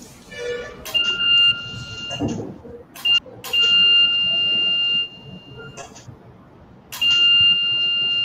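Electrosurgical (diathermy) generator's activation tone: a steady high beep sounding three times, short near the start, about a second and a half in the middle, and again from about seven seconds in, each sounding while current is applied to cauterize tissue.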